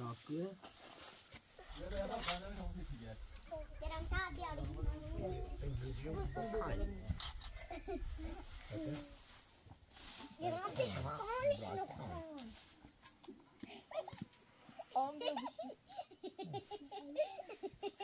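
Children and adults talking over one another, with a low rumble under the voices through the first half.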